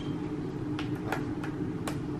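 Fingers tapping and clicking on the frame and touch buttons of a lighted vanity mirror, three light clicks spread over two seconds, over a steady low hum.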